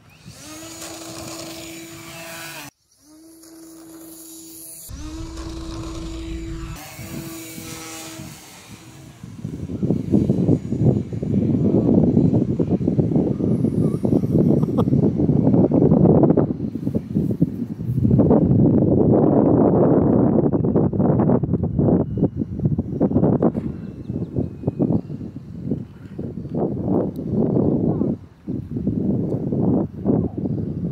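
The electric motor and 8x6 propeller of an RC model plane run at a steady, high, humming pitch for about the first nine seconds, with a few brief drop-outs. After that, loud gusty wind noise buffeting the microphone takes over.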